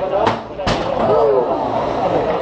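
Two sharp impacts about half a second apart from 3 lb combat robots colliding in the arena, the drum-spinner robot landing blows on its vertical-blade opponent.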